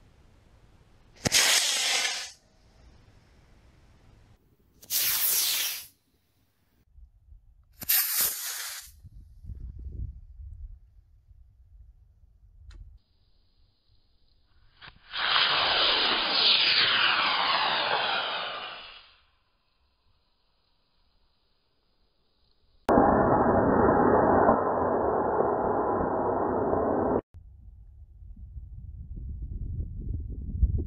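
Quest Q-Jet D16-4 composite model rocket motor (Black Max black-smoke propellant) firing at lift-off. There are three short rushing bursts of about a second each, then two longer ones of about four seconds. The first long one falls in pitch; the last is duller and cuts off sharply.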